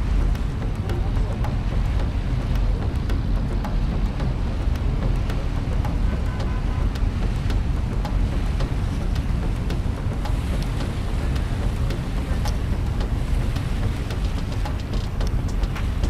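Steady low rumble of wind on the microphone aboard a moving river cruise boat, with faint crackles through it.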